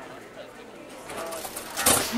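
Faint voices in a lull between chanted calls, growing a little louder over the second half, with a short sharp sound just before the end as the louder chanting comes back in.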